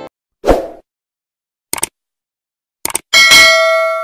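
Sound effects of a subscribe-button animation: a short burst, two clicks, then a bell ding that rings out.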